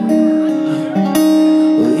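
Acoustic guitar strummed chords ringing out, with two strong strums about a second apart.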